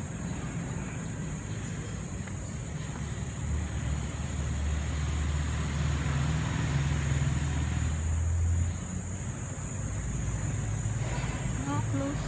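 Low engine rumble of road traffic: a motor vehicle passing on the street, swelling about three to four seconds in and dropping away sharply after about eight and a half seconds.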